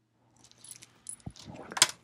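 A deck of tarot cards being shuffled by hand: a scattered run of light clicks and flicks, with a sharper snap near the end.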